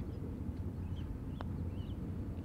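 One light click of a putter striking a golf ball about one and a half seconds in, over a steady low outdoor rumble with a few faint bird chirps.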